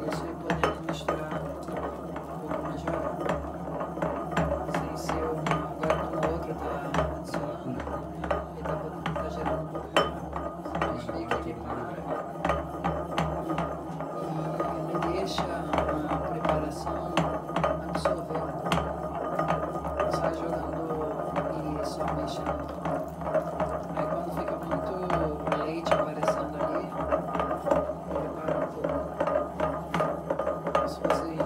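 Wooden pestle churning a milky liquid in a ceramic mortar, clicking and knocking against the bowl many times a second in an irregular rhythm, as milk is mixed into the herbal paste for a ksheera basti. A steady hum runs underneath.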